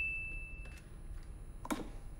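The fading tail of a bright, bell-like sound-effect ding that marks another sin on the counter, ringing out over about the first second. After it comes a quiet low rumble of film-scene ambience, with a faint click near the end.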